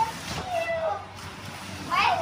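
A child's short wordless vocal sounds: a brief high note, then a falling one about half a second later.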